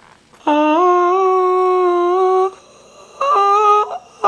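A man's voice singing or humming one long held note for about two seconds, then a shorter second note near the end, as the backpack's main compartment is swung open.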